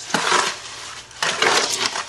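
A shovel scraping and churning through a wet clay-and-sand cob mix in a wheelbarrow: two gritty strokes, each about half a second long.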